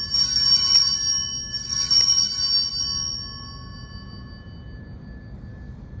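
Altar bells rung at the elevation of the consecrated host. A clear ring of several bell tones sounds at the start and again about a second and a half in, then fades away by about three seconds in.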